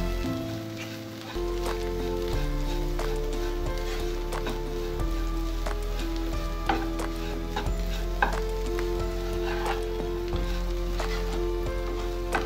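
Diced carrots and green beans with grated coconut sizzling as they fry in a pan, stirred with a spatula that scrapes and clicks against the pan now and then. Background music with held notes plays underneath.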